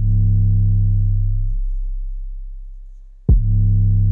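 Distorted 808 bass note from FL Studio looping. It strikes right at the start and sounds full for about a second and a half, then only a low boom lingers and fades until the note strikes again a little after three seconds in.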